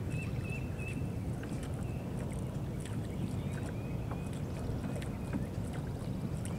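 Steady low rumble of water and wind around a bass boat on a lake, with a bird giving short, high whistled chirps again and again.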